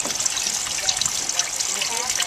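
Wine trickling and splashing steadily as it is run through a three-stage filter into a mixing vessel.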